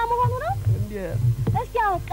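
A woman's high-pitched voice calling out: a held tone at first, then rising and falling sliding tones.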